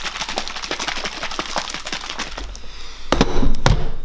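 Rapid crackling of thin plastic food packaging being crinkled and pulled open by hand, followed about three seconds in by a louder burst of knocks and rustling.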